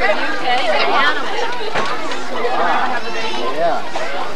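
Indistinct chatter of several people's voices overlapping, with no clear words.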